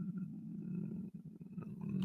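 A man's low, quiet, throaty vocal sound under his breath, somewhere between a groan and a stifled chuckle, with no words. It fades about a second in and picks up again near the end.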